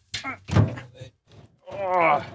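Plastic crates loaded with persimmons being lifted and set down on a cargo tricycle's bed: two thuds about half a second apart near the start, then a man's voice near the end.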